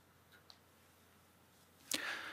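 Near silence with a couple of faint ticks, then near the end a sharp click and a soft rustle as the metal chalice and paten are picked up off the altar.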